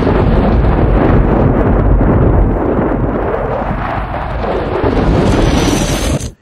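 Explosion sound effect: a loud, continuous rumble of a fireball, dipping slightly about four seconds in.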